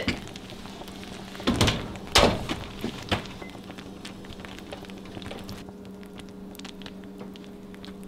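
A few dull knocks in a kitchen, the two loudest about one and a half and two seconds in and a smaller one near three seconds, then faint scattered ticks over a steady low hum.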